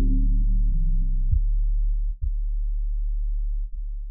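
Electronic track ending: held chords over a deep bass note, changing a few times, growing steadily duller as the upper notes are cut away, until only a low bass hum remains and fades down near the end.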